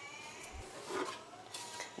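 The cabinet of a Sansui 6060 stereo receiver being slid off its chassis: a faint scraping rub that swells briefly about a second in.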